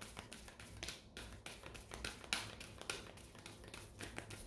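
Faint, irregular soft taps and clicks, a few a second, of tarot cards being shuffled in the hands.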